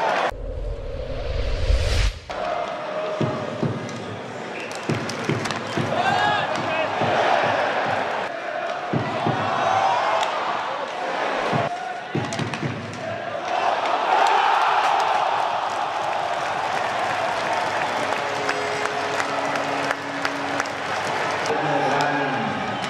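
A rising whoosh over a deep bass rumble for about two seconds, a transition sound effect. Then ice-hockey arena sound: crowd noise with sharp knocks of sticks, puck and boards, the crowd swelling a little past the middle.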